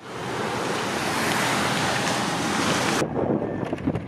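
Small waves washing onto a sandy beach, a steady even rush of surf. It cuts off abruptly about three seconds in, leaving quieter sound with a few faint clicks.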